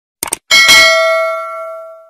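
Sound effect of a subscribe-button animation: a quick double mouse click, then a bright bell ding that rings out and fades over about a second and a half, the chime of the notification bell being clicked.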